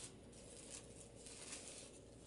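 Near silence, with faint rustling of a thin plastic or paper wrapper being handled.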